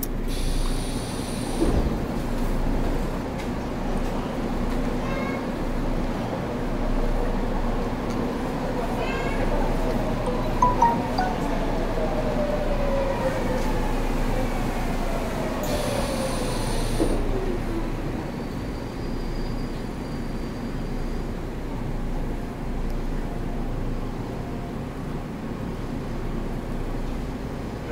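Seoul Metro Line 8 subway train running, heard from inside the car: a steady rumble with a whine that falls in pitch through the middle, and two brief high hisses.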